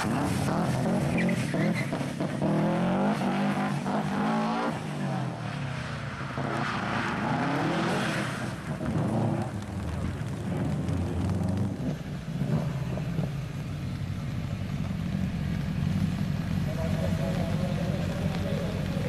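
Subaru rally car's flat-four engine revving hard, its pitch climbing and dropping through gear changes as the car slides on wet tarmac, then running at lower, steadier revs in the second half.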